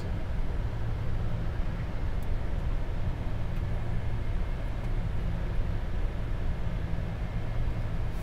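Steady flight-deck noise of a Boeing 747 in its climb after take-off: a rushing airflow hiss over a low engine hum, without change.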